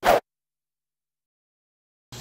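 A short scratchy burst lasting about a fifth of a second at the very start, then dead digital silence.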